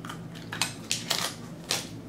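Trading cards and their plastic and foil packaging being handled on a table: about five short, sharp crinkles and clicks within two seconds.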